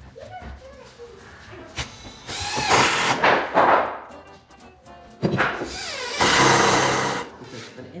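Cordless impact driver driving screws into a wooden board in two bursts of a second or two each, the second starting about five seconds in.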